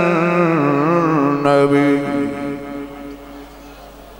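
A man's solo voice chanting an unaccompanied, melismatic Arabic recitation. A long wavering note ends about two seconds in and dies away in the room's echo.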